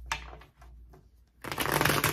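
A deck of tarot cards being riffle-shuffled: a light snap just after the start, then a loud, rapid flutter of cards riffling together in the last half second.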